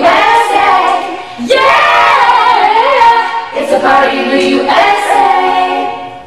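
A group of young female voices with one male voice singing a pop song together in three long, held phrases, the last fading out near the end.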